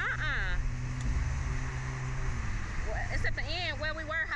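Slingshot ride's machinery giving a steady low motor hum for the first couple of seconds as the capsule settles back to the platform, with the riders' voices over it.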